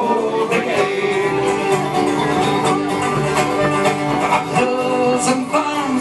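Irish folk band playing a live instrumental break between verses, with strummed acoustic guitars keeping a steady rhythm under a flute carrying the melody.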